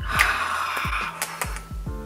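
A woman's long breathy sigh, about a second long, fading out, over background music with a steady beat.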